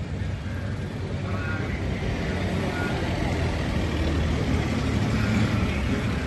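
Steady street traffic: the low rumble of vehicle engines running on the road, growing slightly louder, with faint voices in the background.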